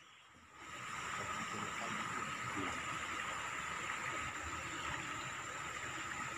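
Steady rushing of floodwater, starting about half a second in, with a faint steady high whine over it.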